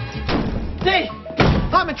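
A door banging open: a single loud thud about one and a half seconds in, just before a man starts talking, with music playing underneath.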